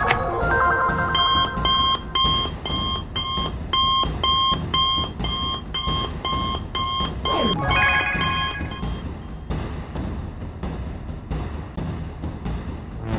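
Electronic beeping of a smartwatch's incoming-call ring, repeating about twice a second for several seconds, over background music. A falling tone sweeps down near the end of the ringing.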